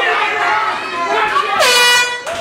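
An announcer's voice speaking, ending about one and a half seconds in with one long, loud drawn-out call that slides down and holds.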